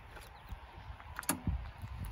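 A few light clicks and knocks from handling a car's raised hood and its support rod as it is readied to close, with the sharpest click about a second and a quarter in, over a low rumble.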